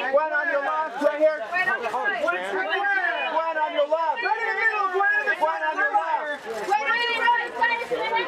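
Press photographers' voices calling out and chattering over one another, several people talking at once.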